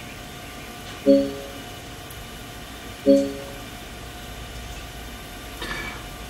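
Two identical electronic chimes about two seconds apart, each a short pitched tone that fades quickly, over a steady low hum.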